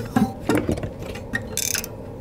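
Heavy glossy pages of a large art book being handled and turned by hand: a few soft clicks and taps, then a short paper swish near the end.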